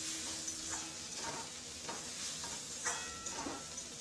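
Onions and tomato sizzling in a hot aluminium karahi while a metal spatula scrapes and stirs them against the pan in repeated strokes. Just before the end there is a louder clink of the spatula on the pan with a brief metallic ring.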